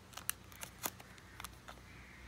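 A few faint, irregular clicks and ticks of a thick stack of trading cards being handled and shifted in the hand.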